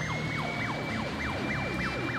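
Fire engine sirens passing: one siren runs in a fast yelp, sweeping about three times a second, while a second holds a long, high, steady note. A low rumble of traffic lies underneath.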